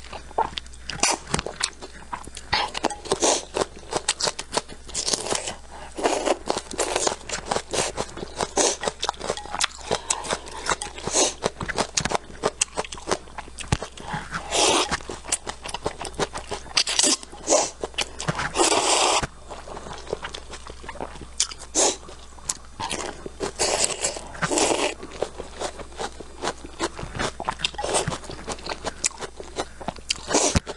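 Close-miked slurping of noodles and chewing, full of quick wet clicks and smacks, with several longer slurps in the middle stretch.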